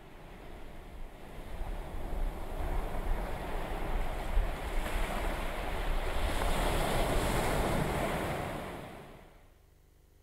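Sound of ocean surf swelling up over the first few seconds, with a deep rumble underneath, then fading away about nine seconds in.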